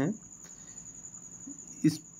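A pause in a man's speech, with a faint, steady high-pitched trill or whine in the background throughout. A word ends at the start and speech resumes near the end.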